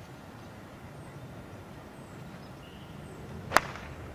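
A golf wedge swing: a short swish of the club coming down, then a single sharp click as the clubface strikes the ball about three and a half seconds in.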